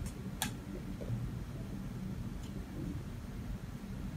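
Quiet handling of a small plastic pot as it is painted with a paintbrush: one sharp tick about half a second in and a fainter one later, over a steady low hum.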